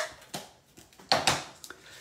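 Clear acrylic stamp block handled and set down on the work surface: a sharp tap at the start, a lighter one just after, and another knock about a second in.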